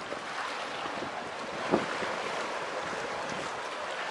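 Sea water sloshing and lapping against a camera held at the surface of the sea, with wind on the microphone. A short louder slap of water comes a little under two seconds in.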